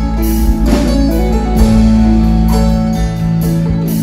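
Live band music on keyboards and guitar with light percussion, an instrumental stretch without singing.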